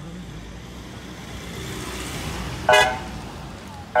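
An ambulance pulling in, its engine and tyre noise growing, then two short, loud blasts of its horn, the second near the end.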